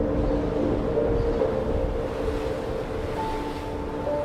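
Stormy sea ambience, a steady noise of wind and surf, under soft ambient music of sustained held notes that thin out. A new higher note comes in about three seconds in.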